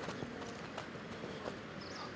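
Football boots landing on grass turf as goalkeepers step over low training hurdles: a few faint, irregular taps over a steady outdoor hiss.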